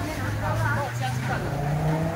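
A motor vehicle engine running close by, its low hum shifting slightly in pitch, mixed with a metal spatula scraping and tossing noodles in a wok and people talking in the background.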